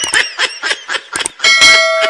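Subscribe-animation sound effects: a quick run of clicks and short chirps, then, about one and a half seconds in, a notification bell chime that rings on.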